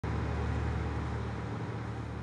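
A steady low hum with a rushing background noise, easing off slightly towards the end.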